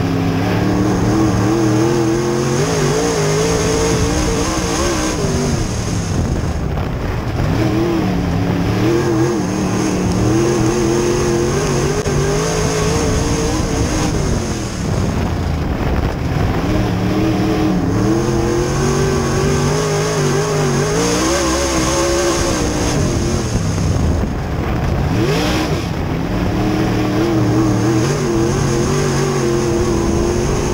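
V8 engine of an open-wheel dirt-track modified race car at racing speed, heard from inside the cockpit. The engine note climbs under throttle on the straights and drops as the driver lifts for each turn, repeating lap after lap.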